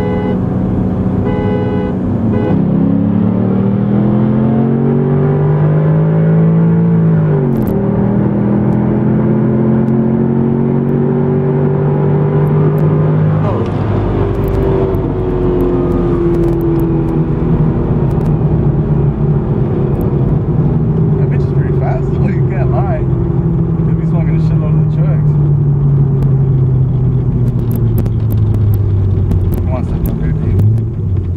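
Corvette LS3 6.2-litre V8 with aftermarket intake, exhaust and tune, heard from inside the cabin, accelerating hard through the gears: a steady note at first, then the pitch climbs in each gear and drops at shifts about 2.5, 7.5 and 13.5 seconds in. After the last shift the note holds and slowly sinks.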